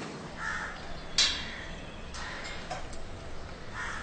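Crows cawing a few times in short harsh calls, the loudest and sharpest call about a second in.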